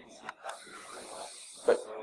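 Low room noise with a faint steady hiss and a few soft clicks, and a brief spoken word near the end.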